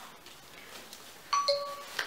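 A two-note electronic chime, a high tone then a lower one, like a doorbell, sounding once about a second and a half in, over faint handling noise.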